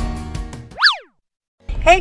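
Background music fading out, then a short cartoon-style sound effect whose pitch jumps up and slides quickly down, followed by a moment of dead silence.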